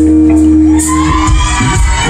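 Live band of electric and acoustic guitars holding a final chord that stops about a second in, followed by the crowd whooping and cheering.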